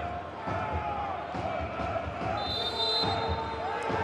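Football stadium ambience with crowd voices in the stands. A short, high referee's whistle blast comes about two and a half seconds in, signalling the penalty kick to be taken.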